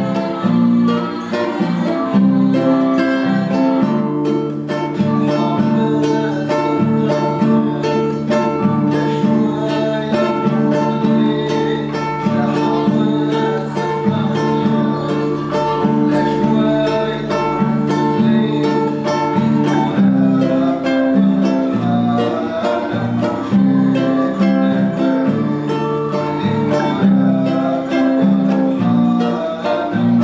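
Nylon-string classical guitar strummed in a steady, driving rhythm, working through the chords Am, G, F, G and back to Am.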